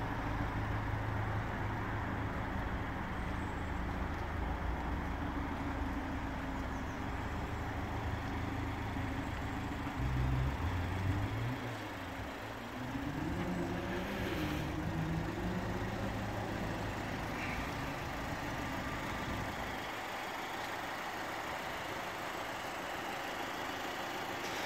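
Steady low hum of a running motor vehicle engine, with a brief swell about ten seconds in followed by a pitched sound wavering up and down for a few seconds.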